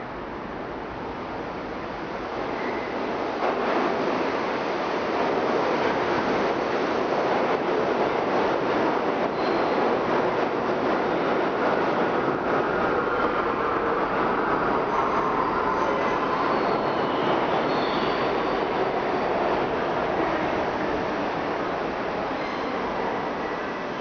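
New York City subway train running on a nearby track, out of sight, growing louder about four seconds in and then holding steady, with faint squealing wheel tones near the middle.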